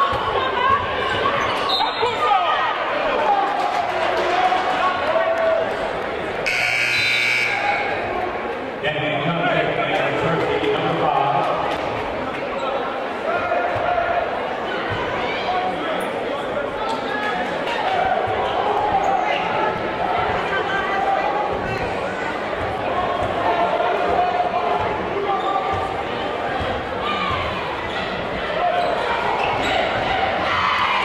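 Gym crowd chatter with a basketball bouncing on the hardwood floor. About six and a half seconds in, the scoreboard horn sounds once and holds for about two seconds.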